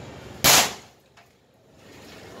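A single shot from a foot-pump-charged pneumatic air rifle, a sharp crack about half a second in that dies away quickly. A faint click follows a moment later.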